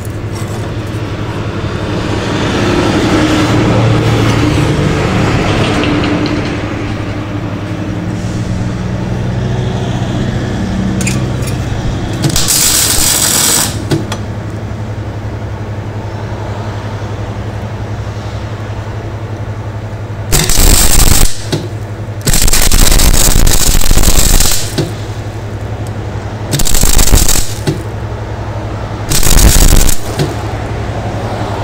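MIG welder tack-welding a galvanised steel strip: five bursts of crackling arc, each about one to two seconds long, most of them in the second half, over a steady low hum.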